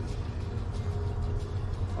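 Steady low rumble, with faint rustling and small clicks as disposable gloves are pulled onto the hands.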